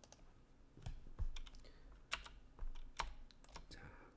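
Irregular clicking of a computer keyboard and mouse, about a dozen sharp clicks that begin about a second in.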